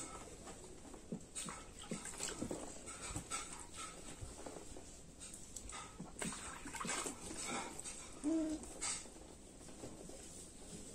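Soft water splashes and sponge scrubbing in a plastic baby bath, with brief whimpering from the baby, one short pitched whimper coming a little after eight seconds.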